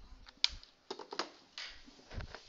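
A few sharp clicks and light taps, the loudest about half a second in and a short run of them around one second in.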